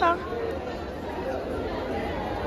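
Background chatter of many voices, with one short falling vocal sound at the very start.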